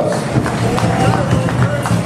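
Voices in a large, echoing hall with many quick, irregular jingling clicks from pow wow dancers' regalia as the dancers file close past.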